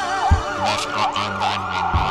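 Siren-like wail in quick rising-and-falling sweeps, set in the music over a steady kick-drum beat and bass line.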